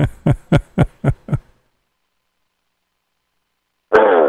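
A man coughing: a quick run of about six short coughs, each weaker than the last, that stop about a second and a half in. The cough is put down to allergies.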